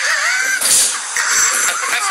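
Excited yelling and shrieking voices, with pitch glides, a short noisy burst about half a second in, and shouts running into a long held scream near the end.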